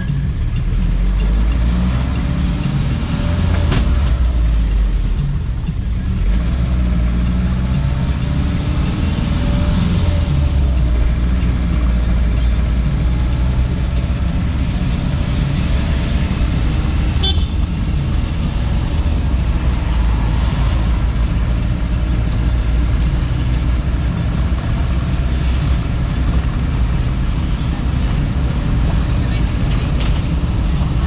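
Car driving in traffic, heard from inside the cabin: a steady low rumble of engine and tyres on the road, with one sharp click about two-thirds of the way through.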